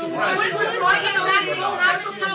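Several voices talking over one another: overlapping chatter of a roomful of people, with no single voice clear.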